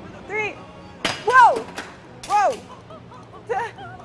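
A heavy drop weight on a guillotine-style impact rig falls and strikes a phone in its protective case with one sharp crack about a second in. Loud startled exclamations and laughter follow.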